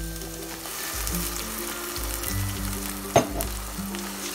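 Tomato purée hitting hot oil and browned onions in a stainless-steel pot, sizzling steadily as it is stirred in with a wooden spatula. This is the stage where the tomatoes go into the onion masala. A single sharp knock comes about three seconds in.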